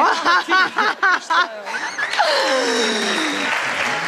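Quick bursts of laughter, then one voice drawing out a long sound that falls in pitch, over audience applause.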